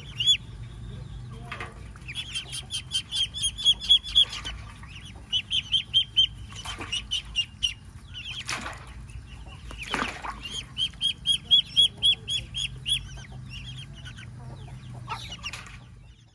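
Muscovy ducklings peeping: runs of rapid, high-pitched peeps, about five a second, coming in three bursts. Two brief rushing noises come between them.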